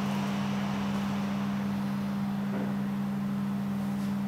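Overhead projector running: a steady low hum on one pitch over an even fan hiss.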